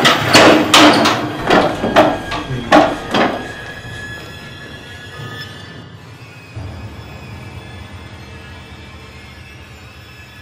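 A metal-framed stacking chair banging and clattering about six times in quick succession over the first three seconds or so. Music with long held tones runs beneath and carries on more quietly after the knocks stop.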